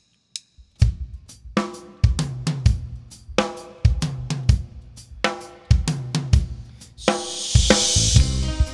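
A couple of sharp drumstick clicks count the band in. About a second in, a live rock band comes in on the beat: drum kit with kick, snare and hi-hat, plus guitars and bass. A cymbal wash swells near the end.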